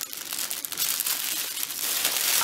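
Plastic packaging and plastic bags crinkling as they are handled, an irregular, continuous rustle.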